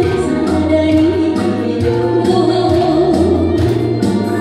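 A woman singing a song through a microphone and PA, with instrumental accompaniment. The sung melody wavers with vibrato over a steady beat and bass line.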